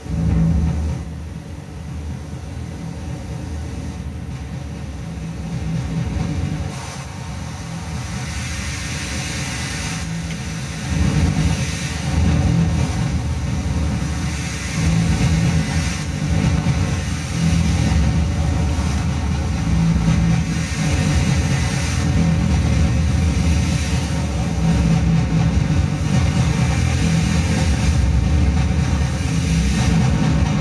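Improvised electronic noise music from synthesizers, a Roland MC-303 groovebox and a Korg Kaossilator: a loud, deep distorted drone that starts abruptly, with low notes shifting every second or two under a hiss-like haze. It grows louder about eleven seconds in.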